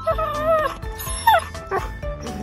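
Pit bull whining over background music: a drawn-out whine near the start, then a shorter falling one a little past the middle. It is the excited whining this dog makes when he sees other dogs.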